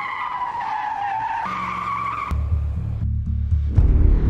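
A car's tyres squeal in a screech lasting a little over two seconds, the pitch sagging slightly and then stepping up before cutting off. A low rumble follows, and music comes in near the end.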